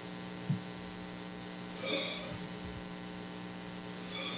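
Steady electrical mains hum at low volume, with a short faint blip about half a second in and a soft faint sound around two seconds in.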